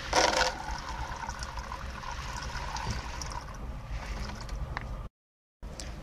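Okra seeds poured from a seed packet into a plastic jar of lukewarm water: a short burst of pattering and splashing at the start, then a steady low hiss with a few light clicks. The sound drops out to silence for a moment about five seconds in.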